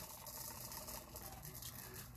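Faint trickling hiss of fine glitter sliding off a folded sheet of paper onto a wet epoxy-coated tumbler, with tiny grainy ticks, over a low steady hum.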